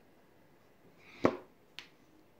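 Two short, sharp clicks about half a second apart, the first louder, after a second of quiet.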